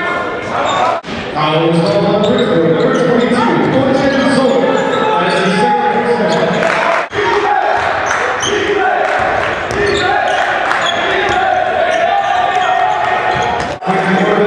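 Basketball game sound in a gymnasium: a ball dribbling on the hardwood floor amid players' and spectators' voices echoing in the hall. The sound breaks off briefly where clips are cut, about a second in and about seven seconds in.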